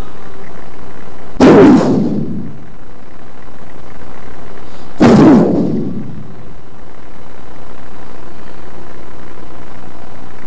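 Two loud, sudden bursts about three and a half seconds apart, each dying away over about a second.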